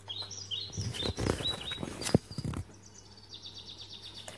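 Birds chirping: short falling chirps, then a rapid twittering trill near the end. A rustling noise with a sharp click about two seconds in sits alongside them, over a steady low hum.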